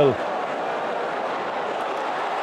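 Steady crowd noise from a football stadium: an even din of many fans, with no single voice or sharp sound standing out.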